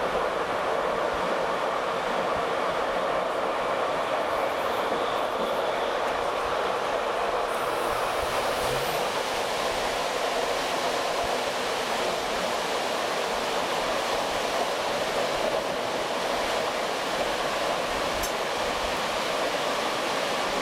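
Steady running noise of a train at speed, heard from inside a coach at the window: wheels rolling on the rails and air rushing past, an even sound without pauses.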